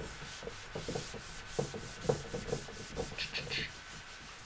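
A cloth wiping dry-erase marker off a whiteboard in quick, repeated scrubbing strokes.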